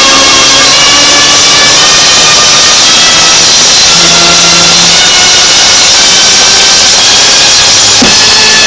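Loud, steady hissing noise with faint held musical notes underneath, from an old film soundtrack.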